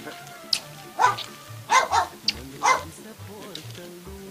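A dog barking about four times in quick succession, over background music with a steady pulsing bass beat.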